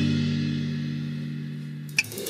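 Instrumental gap in a guitar-led song: a held guitar and bass chord rings out and slowly fades. A short sharp hit comes right at the end.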